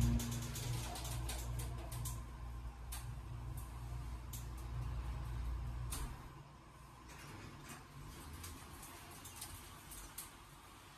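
Hydraulic elevator's pump motor humming low and steady while the car travels, with light creaks and ticks, then cutting off about six seconds in as the car stops. The car door slides open near the end.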